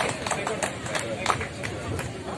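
Scattered handclaps from an audience, thinning out after the first second, with voices talking underneath.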